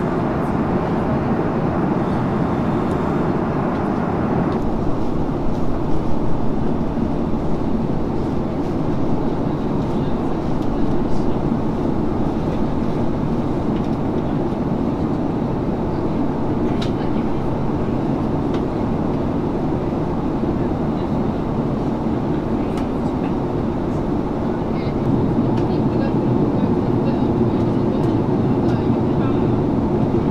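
Steady cabin roar inside an Airbus A340-300 airliner in descent, the airflow and CFM56 engine noise heard from a seat beside the wing. The higher hiss eases slightly about four seconds in.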